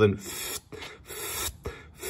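A man's two breathy breaths, each about half a second long, then a short click.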